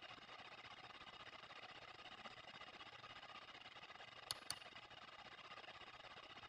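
Near silence: faint steady room hiss, broken by two quick, faint clicks a fraction of a second apart about four seconds in.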